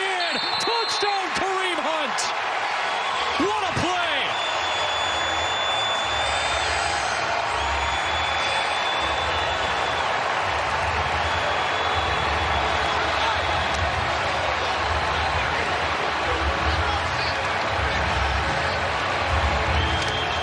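Stadium crowd noise on a football TV broadcast just after a touchdown, a steady wash of voices, with a low thumping beat that comes in about six seconds in.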